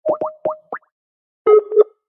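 Electronic call tones from a phone calling app as an outgoing call is placed: four quick rising blips, then two short beeping notes near the end.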